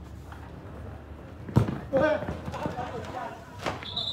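A football struck hard, one sharp thump about one and a half seconds in, then players shouting and a second knock near the end. A referee's whistle starts right at the end, blown for a foul.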